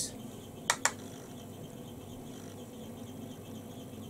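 Two quick light clicks a fraction of a second apart, as makeup tools are handled, over a faint steady background hum.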